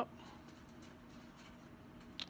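Quiet room tone with a faint steady hum and no distinct handling sounds.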